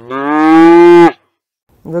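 A Holstein dairy cow mooing once: a single loud call that rises a little at the start, holds steady for about a second and stops abruptly.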